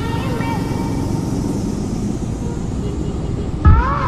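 Sport motorcycle's single-cylinder engine running at low speed in town traffic, with steady wind and road rush on the microphone. A louder low thump comes near the end.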